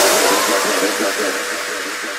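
Drum and bass track with the drums and bass cut out, leaving a hissing electronic noise wash and a faint held tone that fade steadily.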